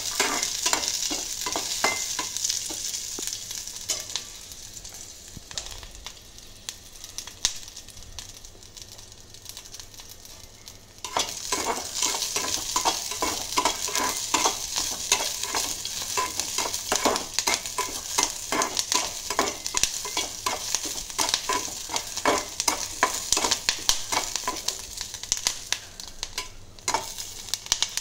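Green chillies sizzling as they fry in oil in a metal kadai, with a steel spatula scraping and clicking against the pan as they are stirred. The sizzle drops for several seconds and then comes back louder about eleven seconds in, with quick, busy scraping.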